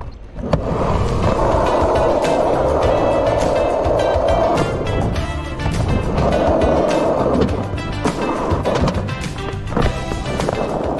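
Skateboard dropping in from the top of a tall ramp, the board landing on the ramp about half a second in, then its wheels rolling loudly across the ramp surfaces, with a dip in the rolling around five seconds in before it picks up again.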